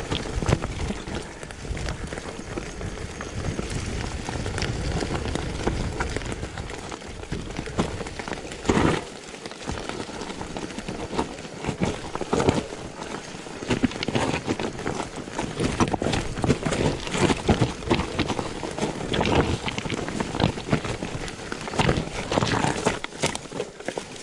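Mountain bike riding down a rocky forest trail: tyres rolling and crunching over dirt, leaves and loose stones, with many sharp knocks and rattles from the bike as it hits rocks, over a steady rushing noise. The knocks come thicker and louder about nine seconds in and through the second half.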